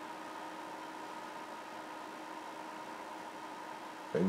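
Faint steady background hiss with a thin, steady whine, from electronic equipment running on the workbench.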